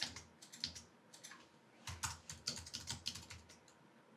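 Keystrokes on a computer keyboard: a few scattered key clicks in the first second, then a quick run of typing from about two seconds in that stops shortly before the end.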